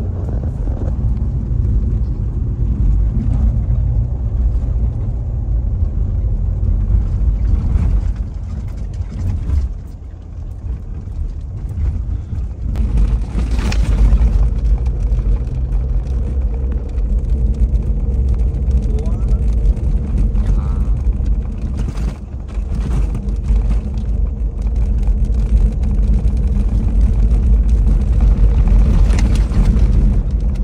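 Road noise inside a moving car's cabin: a steady low rumble of tyres and engine, easing off for a moment about ten seconds in.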